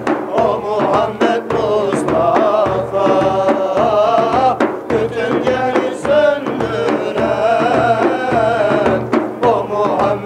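Men's voices singing a Turkish ilahi (devotional hymn) together, accompanied by large frame drums beaten in a steady beat.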